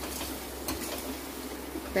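Steel ladle stirring and scraping frying onion-masala paste in a stainless steel pot, with a few light clicks of metal on metal over a soft sizzle and a steady low hum.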